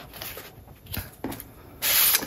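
Paper and cardstock album pages and inserts rustling and rubbing as they are handled, with a few small clicks and a brief louder rustle near the end.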